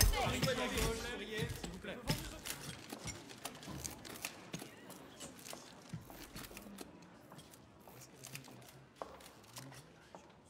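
Murmuring voices of a crowd in a hall, dying away after about a second, with a run of sharp camera-shutter clicks that thins out and grows fainter towards the end.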